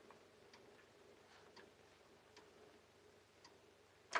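Near silence: faint room tone with a low hum and about six soft ticks of a clock spread through the quiet.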